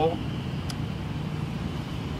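Steady low outdoor background hum, with a faint short click about two-thirds of a second in.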